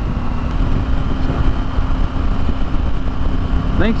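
Motorcycle riding along at a steady speed: a steady engine hum under a low rush of wind on the microphone.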